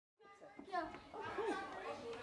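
Children's voices chattering, fading in from silence a fraction of a second in and growing louder.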